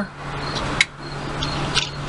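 Handling noise of small metal parts as an RCA jack is slipped into its hole in a thin metal case, with one sharp click about a second in.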